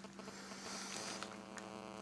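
Faint steady electrical hum: one low tone with a ladder of evenly spaced overtones above it.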